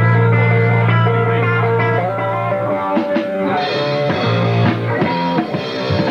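Live rock band playing: electric guitar, bass and drum kit. A low chord is held for the first couple of seconds, then gives way to moving guitar notes and drum hits. Heard from a second-generation VHS copy, with a dulled top end.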